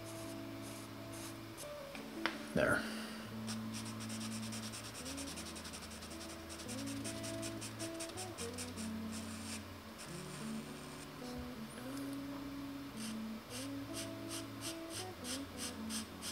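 Pastel pencil scratching on paper in quick, closely repeated short strokes, heard over quiet background music of sustained chords. A brief louder sound comes about two and a half seconds in.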